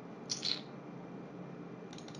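Faint steady room tone on a desktop microphone, with one brief soft high hiss about a third of a second in.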